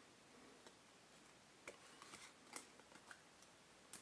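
Near silence with a few faint, short flicks of cardboard trading cards being slid and shuffled in the hands.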